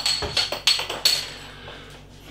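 A metal bottle cap knocked over and rattling on a hard counter: a quick run of light, sharp clicks with a faint high ring, dying away after about a second.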